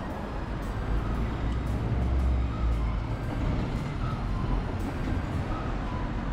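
Road traffic noise: a steady low rumble of cars and other motor vehicles on a city street.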